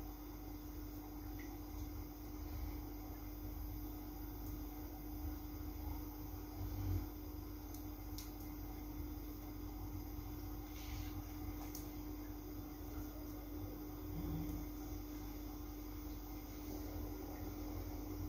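Quiet room tone with a steady low hum, and faint, brief rustles and ticks of hands braiding hair.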